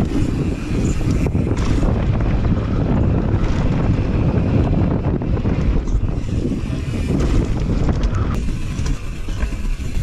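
Wind buffeting an action camera's microphone on a mountain bike descending a trail, over the rumble of knobby tyres on dirt and wooden decking and the clatter of the bike over bumps. The noise eases slightly near the end.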